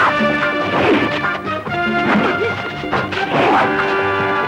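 Film score music running under a fight's sound effects: swooshing blows and impact hits, about four of them, roughly a second apart.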